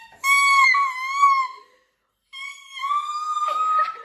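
Young women's voices calling out two long, high-pitched, drawn-out 'hoy-yaaa' shouts, the second answering the first after a short silence about two seconds in.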